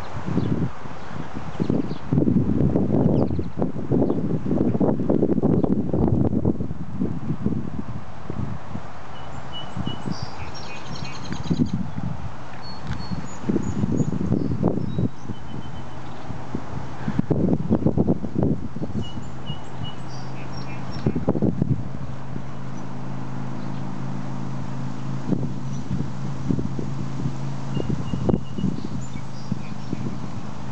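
Outdoor ambience of steady distant road traffic, with irregular rustling steps through grass in several spells and short high bird chirps now and then. A steady low hum joins in about two-thirds of the way through.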